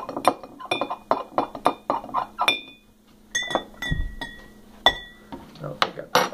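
Metal spoon stirring drink mix into a glass of water, clinking against the glass about three times a second with a short ringing tone. Partway through there is a short pause, then a slower run of clinks with a lower ring.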